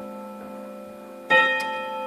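Self-built carillon ringing: a struck note fades away, then about 1.3 s in a new metal note is struck and rings on.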